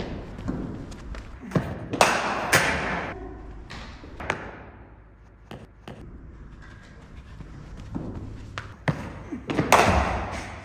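Cricket ball and bat impacts echoing in an indoor net hall: loud sharp strikes with ringing thuds about two seconds in and again near the end, with lighter knocks and thumps between.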